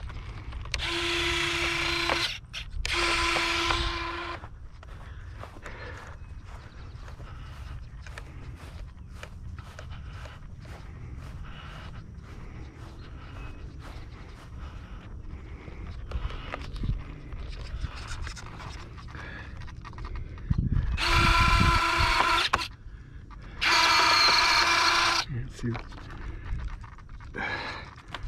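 Electric retractable landing gear of an E-flite F-16 Thunderbird jet cycling: a whirring small-motor whine about a second and a half long, heard twice in quick succession near the start and twice again about three quarters of the way through.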